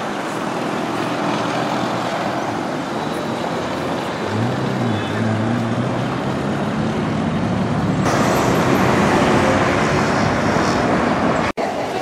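City road traffic: a steady wash of passing cars, taxis and buses. About four seconds in, a low engine note rises and then holds for a couple of seconds. The sound cuts out for an instant near the end.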